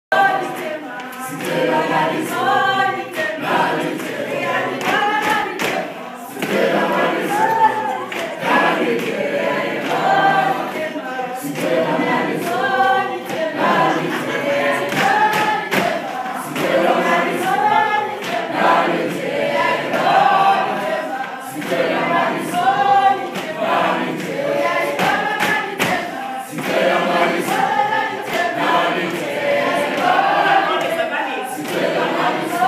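A group of schoolchildren singing together unaccompanied, with hand claps and thuds mixed in.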